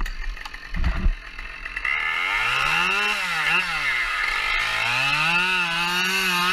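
A chainsaw idling, with a few knocks and a thump at first, then revved up about two seconds in. Its engine pitch rises and wavers, drops back toward idle around four seconds and climbs again near the end.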